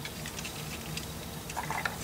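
A few faint, light clicks of plastic LEGO pieces being handled, scattered and irregular, over a low steady background hum.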